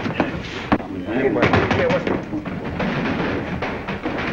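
Fistfight sounds on an old film soundtrack: repeated thuds and knocks of blows and bodies hitting the floor, with men's voices grunting in the middle.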